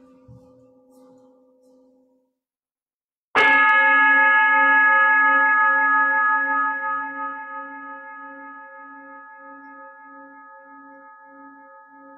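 A large metal singing bowl struck once, about three seconds in, after the faint ring of an earlier bowl has died away. It rings with several clear overtones, its low tones pulsing as it slowly fades.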